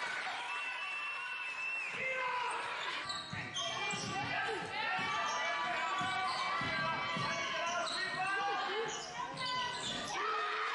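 Basketball bouncing on a hardwood gym floor, with sneakers squeaking and voices calling out, echoing in a large sports hall.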